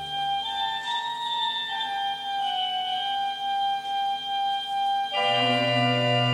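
Pipe organ playing slowly: a single high melody line in long held notes, then a full chord with deep bass coming in about five seconds in.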